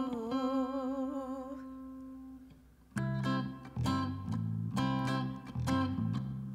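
A woman's hummed "ooh" held with vibrato, fading out over the first two and a half seconds. About three seconds in, an electric guitar and a bass guitar start playing a song intro, with chords struck in a steady rhythm.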